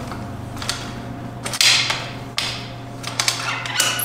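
Metal clacks and clicks of a RadExpand 5 folding e-bike's frame hinge and folding latch being swung together and locked shut. The loudest knock comes about one and a half seconds in, another about two and a half seconds in, and a quick run of small clicks near the end.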